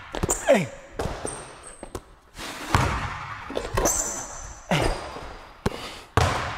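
Basketball dribbled on a hardwood court floor as a player drives into a two-foot power finish. It gives several sharp bounces and landings, spaced irregularly, with a few brief high squeaks from sneakers on the floor.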